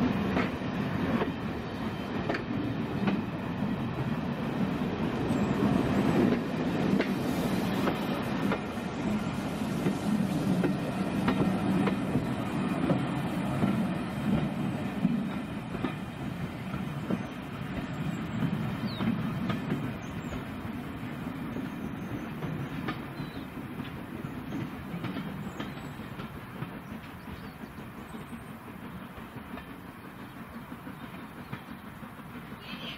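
Passenger coaches of a departing steam train rolling past, with a steady low rumble and regular clicking of wheels over rail joints. The sound fades through the second half as the last coach pulls away.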